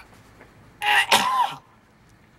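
A man's harsh, choking cough about a second in, in two quick bursts with some voice in them: a dying victim's gag as he coughs up stage blood from his mouth.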